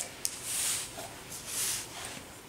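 Hands rubbing and pressing damp copy paper against a plastic doily on parchment paper: two soft swishing strokes about a second apart, with a small click near the start.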